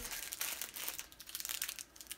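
A clear plastic bag crinkling as it is handled, a quick irregular run of crackles.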